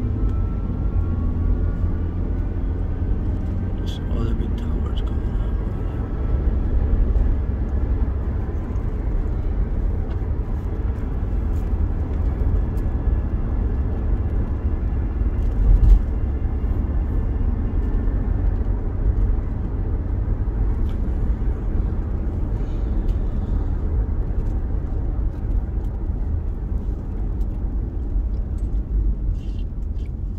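Steady low rumble of road and engine noise inside a moving car's cabin, with a brief louder bump about sixteen seconds in.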